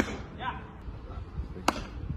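A single sharp crack of a pitched baseball striking at home plate, near the end, with a short knock at the very start.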